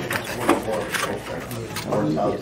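A few short clicks and clatters of sample cups and spoons being handled at a serving table, over faint background voices.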